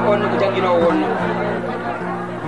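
A man's voice through a handheld microphone and loudspeaker, over steady held background notes.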